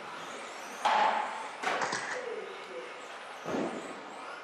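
Radio-controlled buggies running on an indoor track, with sudden thuds and knocks from cars hitting the track, loudest about a second in, then a sharp knock shortly after and another thud near the end.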